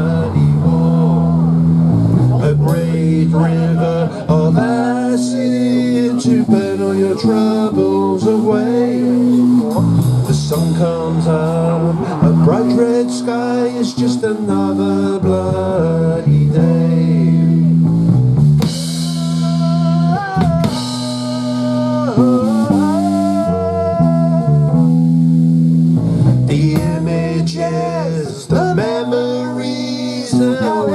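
Live punk band playing a song: a male lead vocal over electric bass and electric guitar, with drums.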